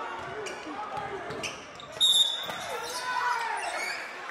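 Basketball game sound in a gym: a basketball dribbled on the hardwood court amid indistinct voices from players and the crowd, with a sudden loud sound about halfway through.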